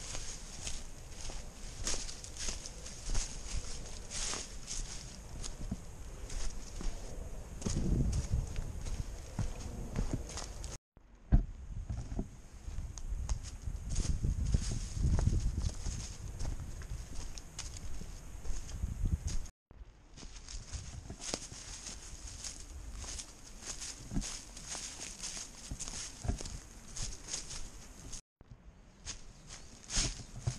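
Hikers' footsteps on a dry, leaf-covered forest trail, a steady run of crunching footfalls while walking uphill. Low rumbling noise on the microphone comes in two bouts, and the sound cuts out abruptly three times.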